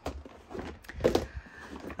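Small clear plastic storage boxes being shifted and lifted, giving a few light knocks and scrapes of plastic.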